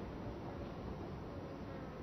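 Faint steady hiss and hum of the recording with no distinct sound in it: room tone.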